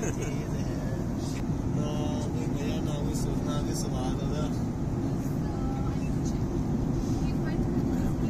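Steady low rumble of an airliner cabin: engine and airflow noise, with faint voices over it.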